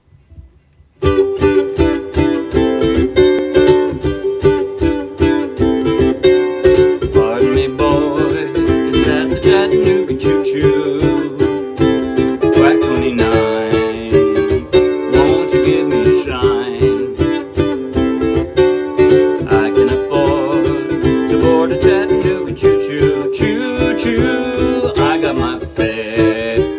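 Ukulele strummed in a steady rhythm, starting suddenly about a second in, with a man singing along.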